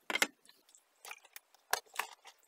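A few short clacks and knocks of laminated chipboard pieces and a metal caulking gun being set down on a wooden tabletop. The loudest is just after the start, with another sharp knock near the end.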